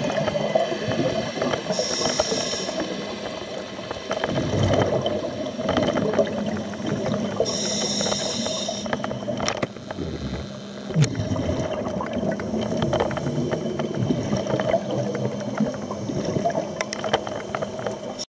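Underwater sound of scuba breathing through a regulator. There are two hissing inhalations, about two seconds in and about eight seconds in, with bubbling exhalations and a steady underwater drone.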